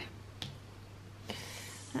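Two quiet, sharp clicks about a second apart as tarot cards and a small crystal stone are picked up off a wooden table, the second followed by a brief soft rustle of cards sliding.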